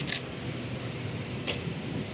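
Steady street background noise. It opens with the last clicks of a rapid burst of camera shutter fire, about six a second, and a single click comes about one and a half seconds in.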